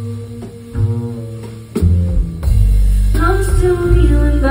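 Archtop guitar fingerpicked: single notes and low bass notes ringing out one after another. A woman's voice comes in singing about three seconds in.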